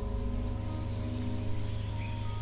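A steady low hum made of several even tones, holding unchanged throughout.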